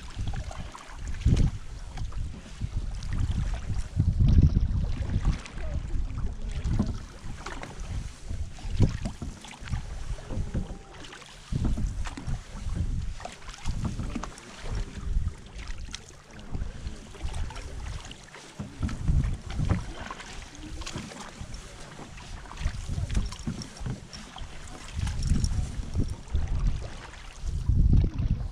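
Canoe paddling on a river: paddle strokes and water splashing close by, with gusts of wind rumbling on the microphone as the loudest sound.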